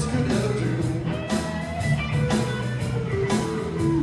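Live blues band playing, with an electric guitar line over bass and a drum beat that hits about once a second; there is no singing here, between sung lines.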